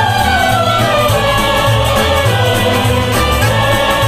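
Mixed choir of men's and women's voices singing a song in unison, with instrumental accompaniment and a steady pulsing bass line underneath.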